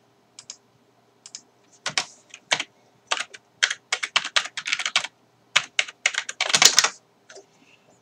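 Typing on a computer keyboard under a clear plastic cover: irregular runs of key clicks, busiest in the middle, with a louder burst of clicks just before the end.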